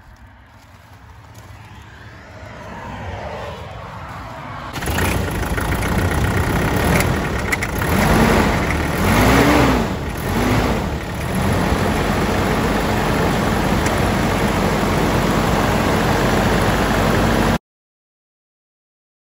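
Nissan Navara's 2.5 dCi four-cylinder turbodiesel running, loud from about five seconds in. It is revved three times in quick succession, each rev rising and falling, then settles to a steady diesel idle. The sound cuts off suddenly just before the end.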